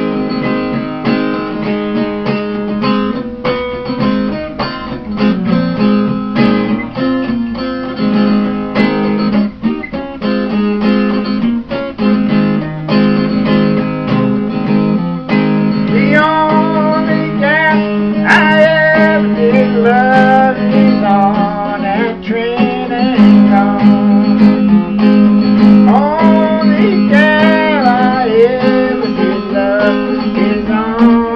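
Acoustic guitar playing an instrumental break in a traditional folk-blues tune, with steady strummed and picked notes. In the second half a wavering, bending melody line rides above the guitar.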